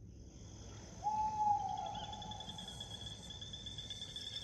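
Night ambience of crickets chirping, starting right away and continuing steadily. About a second in, a single long, slightly falling tone sounds over them and fades out.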